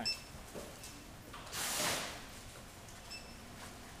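A brief rustling swish about one and a half seconds in, with faint short high beeps near the start and again near the end.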